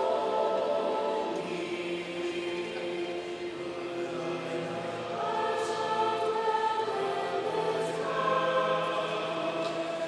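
A mixed high-school choir singing, holding long sustained chords that shift to new ones every few seconds.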